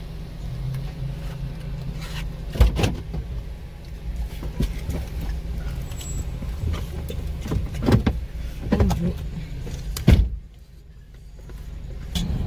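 Steady low hum inside a car, with a few sharp knocks and bumps. The loudest knock comes about ten seconds in, after which the sound drops away briefly.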